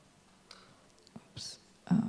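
A near-silent pause in speech, broken by a few faint breathy, whisper-like sounds; a voice starts speaking again just before the end.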